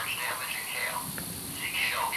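Quiet whispered voices, broken into short bursts, over a steady high hiss.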